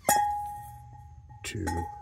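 A metal part of an old return trap is struck once, giving a sharp clink that rings on in one clear tone and fades away over about two seconds.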